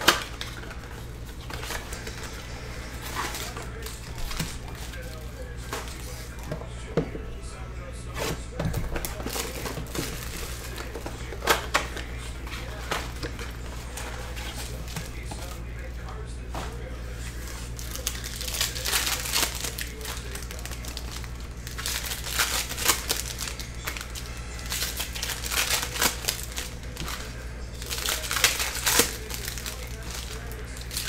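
Plastic shrink wrap and foil trading-card pack wrappers crinkling as they are handled and torn open, in irregular bursts that grow busiest in the last third, over a steady low hum.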